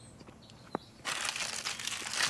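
Ice cream sandwich wrapper crinkling in the hand, starting about halfway through after a quiet first second with a single faint click.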